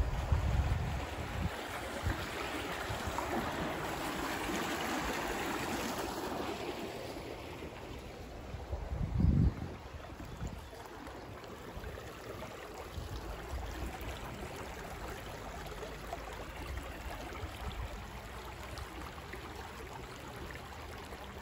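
Creek water running under a wooden footbridge, a steady rushing hiss that swells for several seconds in the first half and then eases to a softer flow. A low rumble of wind on the microphone comes and goes, with one sharp low thump about halfway through.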